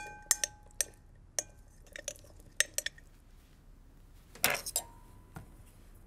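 A metal spoon clinking against a glass mixing bowl while chickpeas are stirred through harissa: a string of light clinks, each leaving a brief ring. About four and a half seconds in comes a louder clatter, followed by a ringing tone lasting about a second.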